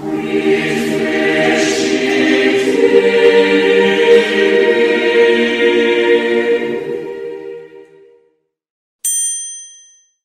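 Choral music of voices holding long sustained chords, fading out about eight seconds in. Then a single bright chime rings out about nine seconds in and dies away.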